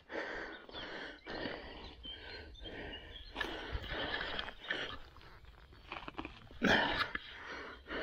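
Footsteps crunching and rustling through dry twigs, fallen branches and undergrowth on a forest floor, in irregular bursts with a louder crunch near the end.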